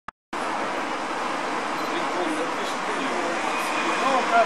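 Steady outdoor background noise, the even hiss of distant road traffic, cutting in abruptly just after the start, with faint voices underneath.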